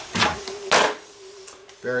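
Plastic body shell of an Axial AX10 rock crawler being set down onto its chassis: two short clattering knocks about half a second apart, the second louder.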